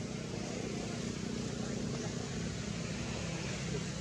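Steady low rumble of outdoor background noise, with indistinct voices mixed in.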